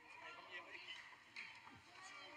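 Faint, indistinct voices of players and spectators around a rugby scrum, with a couple of light clicks.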